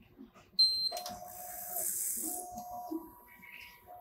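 Accurex CBC 560 Plus hematology analyzer beeps once, briefly and high-pitched, as the aspirate button is pressed. Its internal pumps and valves then run in short, stop-start spells with a hiss as the sample probe draws up probe cleaner for the shutdown cycle.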